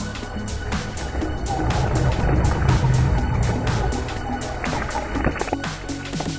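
WLtoys 144001 1/14 RC buggy's brushed electric motor and tyres running on a dirt path: a rough rumble that swells louder in the middle, with short rising whines near the end. Electronic background music with a steady beat plays throughout.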